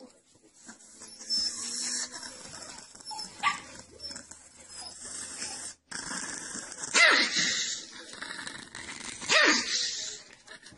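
Small long-haired Chihuahua growling and snapping, with two loud barks falling in pitch about seven and nine seconds in.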